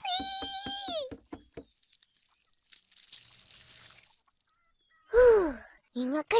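A cartoon boy's high-pitched shriek of alarm at a cockroach, held for about a second and then falling away. A faint hiss follows, and a short falling vocal sound comes near the end.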